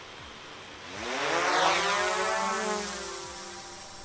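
DJI Mavic quadcopter's propellers buzzing as it climbs after takeoff: a whine that rises in pitch about a second in, levels off, then slowly fades as the drone gains height.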